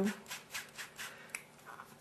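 Large foam sponge dauber rubbing textile ink onto cotton fabric in a few soft, quick strokes, with a small sharp click a little over a second in.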